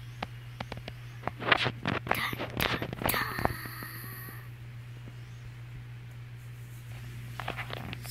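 Clicks and rustling of objects being handled, loudest in the first half, over a steady low hum. A brief high steady tone sounds about three seconds in.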